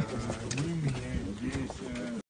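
Low cooing calls that rise and fall in pitch, like a dove's or pigeon's, with a voice faintly mixed in.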